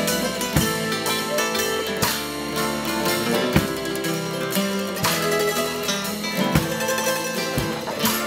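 Acoustic string band playing an instrumental passage: strummed acoustic guitars, mandolin and upright bass, with a drum beat landing about every second and a half.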